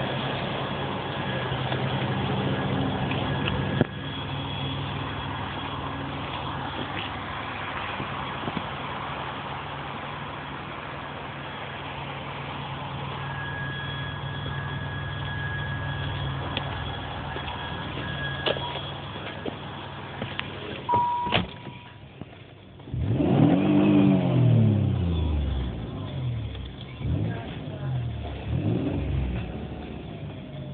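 1992 Chrysler LeBaron's 3-litre V6 idling steadily, with Seafoam engine cleaner burning through it. About two-thirds of the way in there is a sharp thump. From then on the engine is revved in several blips, its pitch rising and falling, the first blip the biggest.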